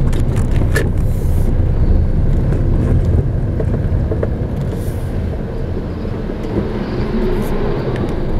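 Steady low rumble of a car's engine and tyres heard from inside the cabin while driving along a street, with a few small clicks and rattles in the first second.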